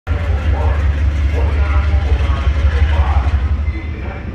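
Diesel locomotive running with a steady low rumble as it moves away along the track, with voices faintly over it.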